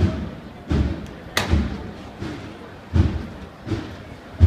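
Bass drum of a procession band beating a slow, steady cadence, about one deep thud every three-quarters of a second, with a sharper crack once, over the murmur of a crowd.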